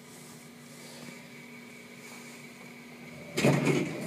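Elevator cab humming steadily with a faint whine as it stops at a floor, then about three and a half seconds in the elevator doors slide open with a louder rumbling rattle.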